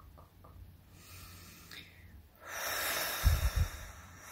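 A person blowing a long, forceful breath out through pursed lips, with a few low thumps in the middle of it. Before the blow, in the first half second, a run of soft clicks at about four a second comes to an end.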